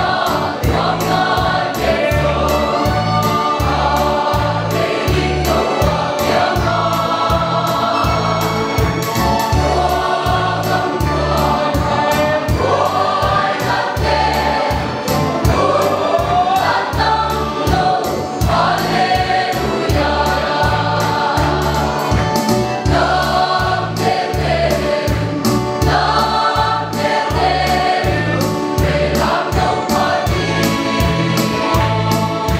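Mixed choir of women's and men's voices singing a gospel hymn in parts, continuously.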